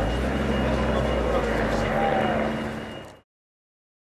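Street noise of background voices over a low, steady vehicle-engine rumble, with a thin steady high tone; it all cuts off suddenly about three seconds in.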